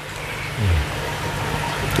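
Steady rushing hiss, like rain falling, with a brief low hum that drops in pitch about half a second in.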